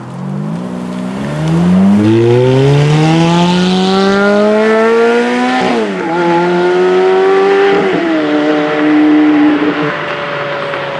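Sports car accelerating hard away, its engine revving up in one long rising pull. Two upshifts, about six and eight seconds in, each drop the pitch before it climbs again.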